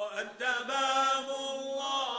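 Chanted devotional poetry: sustained, wavering sung notes, broken briefly just after the start before the chant carries on.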